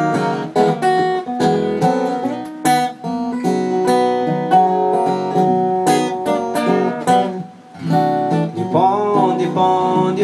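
Two acoustic guitars playing a song's instrumental intro, strummed chords with picked notes, easing off briefly about two-thirds of the way through before picking up again.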